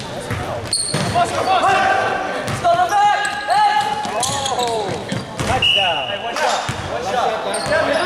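Basketball bouncing on a hardwood gym floor, with sneakers squeaking in short rising-and-falling chirps around the middle, and players' calls, all echoing in the gym.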